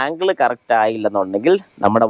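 A man talking: speech only, with short pauses.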